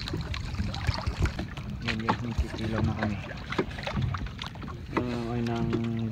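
Wind rumbling on the microphone with scattered knocks and clicks, and a voice holding one long drawn-out call in the last second.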